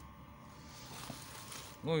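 Faint rustling of a plastic mailer bag being handled on a table, growing slightly about a second in, with a short spoken word near the end.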